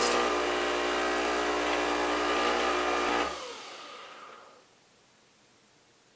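Nespresso Vertuo's water pump running with a steady buzz as the storage cycle pumps the last water out of the system into the bowl. It cuts off suddenly about three seconds in as the cycle ends, and a softer sound fades away over the next second or so.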